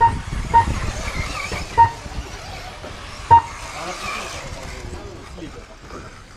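1:10 electric four-wheel-drive buggies running on an off-road track, a faint wavering motor whine under background noise, with four short beeps at uneven intervals in the first few seconds.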